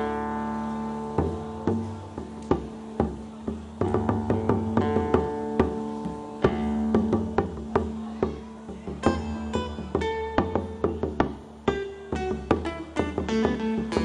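Acoustic guitar played live, with plucked notes and strums ringing over a steady low note, accompanied by light strikes on a small hand drum.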